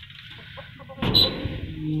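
Caged birds in a wire-mesh coop calling quietly, then a sudden loud outburst about a second in.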